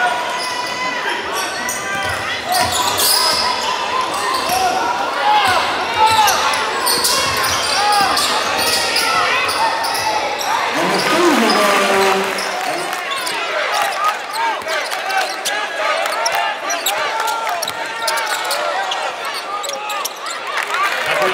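Live basketball game sound in a gym hall: a basketball bouncing on the hardwood court, many short sneaker squeaks, and the voices of players and spectators.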